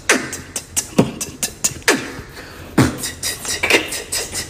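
Human beatboxing in a steady rhythm: a deep vocal kick that drops in pitch about once a second, with sharp mouth clicks and hi-hat sounds between the kicks.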